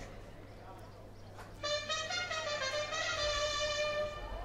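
A short brass-sounding musical phrase of a few held notes, starting about a second and a half in and lasting about two seconds, over a quiet crowd.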